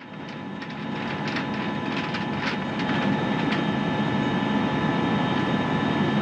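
Steady whir and hum of the International Space Station's cabin ventilation fans and equipment, with a few fixed tones running through it. Several short crisp rustles and clicks sound in the first few seconds as the lettuce tray is handled.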